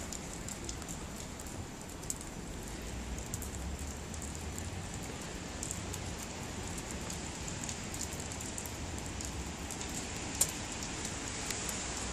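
Steady light rain falling on paving, with scattered sharp ticks throughout and one louder tick about ten seconds in.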